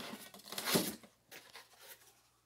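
A small foam ash box scraping and rubbing against the foam fuselage of a model airplane as it is pulled out, with the loudest scrape a little under a second in.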